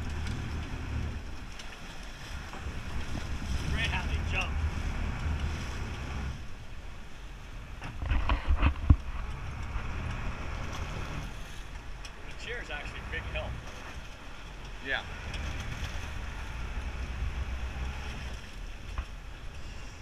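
Low, steady rumble of a sportfishing boat at sea, its engine mixed with wind buffeting the microphone. A loud thump and knocking about eight seconds in.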